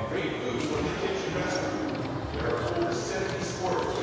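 Video slot machine reels spinning and stopping with a run of light clacks, over the hubbub of a casino floor.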